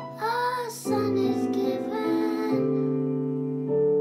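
Young boys singing a hymn with piano accompaniment. The voices give way to sustained piano chords, which sound alone near the end.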